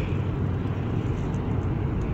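Steady road and engine noise heard inside a moving car's cabin at highway speed.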